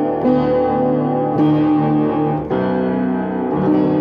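Upright piano played with both hands: sustained chords, a new chord struck about every second.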